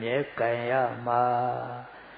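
A Buddhist monk's male voice intoning a recitation in a chanting cadence, with long syllables held on a nearly level pitch; it stops shortly before the end.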